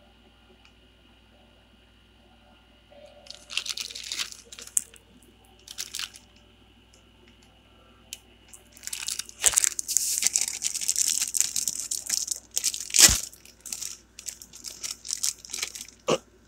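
Thin plastic toy packaging crinkling as it is handled and opened by hand: a few short bursts of crinkling about three to six seconds in, then continuous crinkling from about eight seconds on, with one sharp loud snap about thirteen seconds in.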